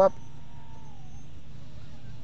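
Whine of the Eachine QX95S micro quadcopter's brushed motors in flight. It is a thin steady tone that dips in pitch about a second in and climbs again near the end as the throttle changes, over a low steady hum.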